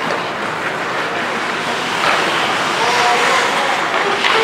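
Ice hockey skate blades scraping and carving on the ice, a steady hiss of rink noise, with faint shouted voices in the second half.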